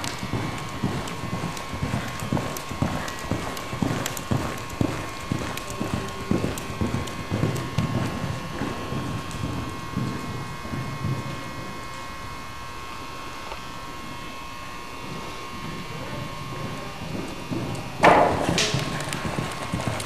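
Hoofbeats of a Welsh pony mare cantering on soft arena footing: irregular dull thuds, which fade as she moves away across the arena and pick up again as she comes back near the camera. A short, loud, harsh burst of sound comes about two seconds before the end, over a faint steady hum.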